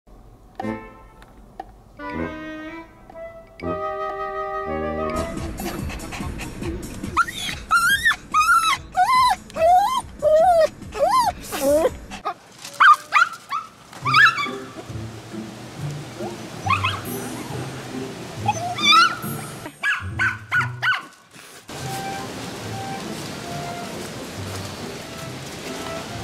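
Background music, opening with a few sustained notes, with a dog whining over it: a quick run of high, rising-and-falling cries about seven to twelve seconds in, and a few more scattered later.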